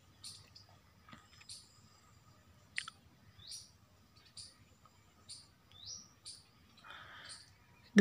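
A bird chirping over and over, short high sweeping notes about once a second, with a brief rustle near the end.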